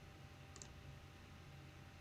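A single faint computer mouse click, pressed and released, about half a second in, over a low steady hum of near silence.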